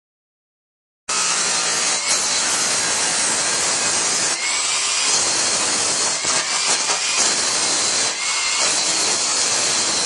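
Electric angle grinder grinding metal: a steady, harsh hiss of the spinning disc on steel, starting about a second in.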